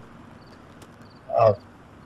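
Quiet background with a few faint cricket chirps, and one short spoken word about one and a half seconds in.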